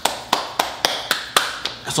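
Quick, even hand claps, about four a second.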